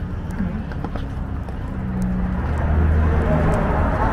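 Footsteps on a paved sidewalk over a low rumble of wind and handling on the microphone, with faint voices in the background; the street noise grows louder in the second half.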